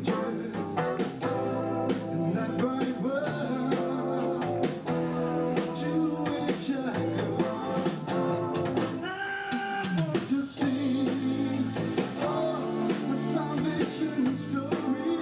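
Live rock band playing a song on electric guitars, bass, keyboard and drums.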